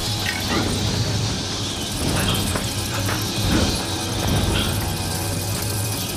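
Horror film soundtrack: a steady low drone under a high hissing chitter, with scattered short squeaks.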